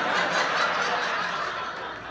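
Audience laughing, a crowd's laughter that swells right away and then slowly dies down.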